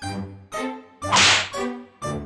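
Cartoon background music of short, evenly paced notes, with a loud swish sound effect lasting about half a second, about a second in.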